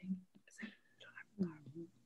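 Faint, quiet speech: a few short murmured or whispered syllables between the louder talk.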